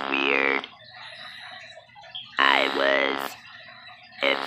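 A woman's voice in drawn-out, wordless phrases about a second long, with the pitch sliding up and down and a pause between them; it sounds like singing or emotional vocalising rather than talk.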